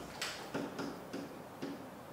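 A pen tapping on an interactive whiteboard as numbers are written, giving a run of light clicks about three a second.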